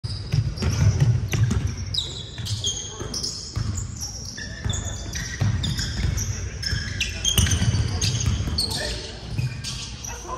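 Basketball being dribbled and sneakers squeaking on a hardwood gym floor, many short high squeaks among the thuds of the ball, echoing in a large gym.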